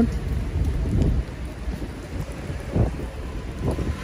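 Rain falling on wet pavement, with a low rumble underneath that is heaviest in the first second.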